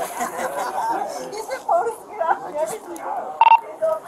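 Indistinct voices talking, then a single short electronic beep about three and a half seconds in, the talk-permit tone of a police handheld radio being keyed.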